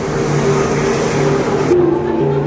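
Background music of low sustained notes over a steady rush of street noise; the street noise cuts off suddenly near the end.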